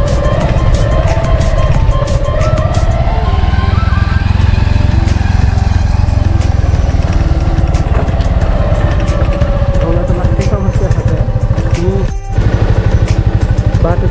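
Motorcycle engine running while riding a dirt track, with background music over it. The sound drops out briefly about twelve seconds in, and the engine is louder after that.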